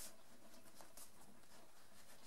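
Faint rustling and light clicks of videotape cases being handled and shuffled in the hands, over quiet room tone.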